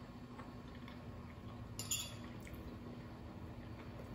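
A metal fork clinks faintly against a bowl about two seconds in, with a couple of lighter ticks after it, over a low steady hum.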